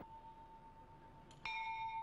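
A bell rings: a faint steady tone, then a louder strike about one and a half seconds in that holds a steady metallic ring with several higher overtones.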